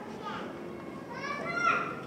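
Audience chatter in a large hall, with one high voice calling out loudly about a second and a half in.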